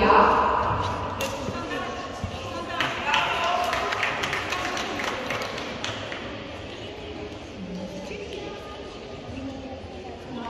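Indistinct voices, then from about three seconds in a short burst of scattered hand-clapping that echoes in a large gymnasium and dies away after a few seconds, leaving a low murmur.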